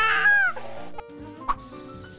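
A cartoon baby's crying wail, held on one high pitch and then falling away about half a second in, over background music. A short sharp swish sounds about a second and a half in.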